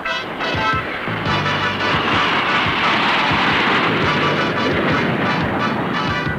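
Jet noise from a formation of Douglas A-4F Skyhawk II jets passing overhead swells to a peak about three seconds in, then fades, over background music.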